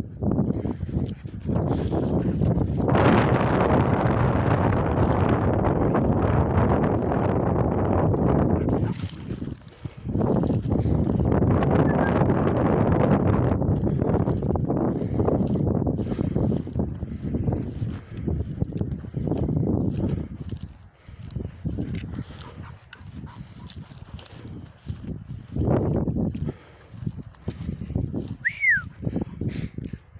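Gusting wind buffeting an outdoor microphone, with the rustle and trample of footsteps through long rough grass; the noise is heaviest through the first two-thirds and then drops to softer, broken gusts. Near the end there is one short falling whistle.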